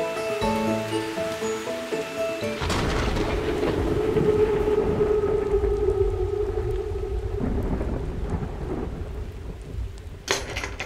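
A few musical notes in the first couple of seconds, then a rumble of thunder over steady rain, with a held musical note underneath that fades out as the storm sound dies away toward the end.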